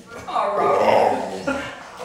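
Pit bull 'talking': one drawn-out, rough-toned vocal lasting about a second, then a short one about a second and a half in.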